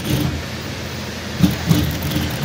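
Industrial single-needle lockstitch sewing machine running steadily, stitching two layers of fabric together as they feed through a joint folder.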